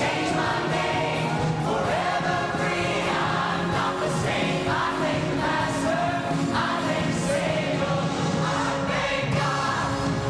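A choir singing a worship song with an orchestra accompanying.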